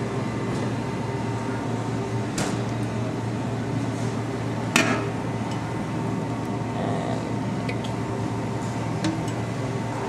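Steady low hum of room ventilation, with a few sharp metal clinks as stainless-steel chafing-dish lids are lifted and set down; the loudest clink, about five seconds in, rings briefly.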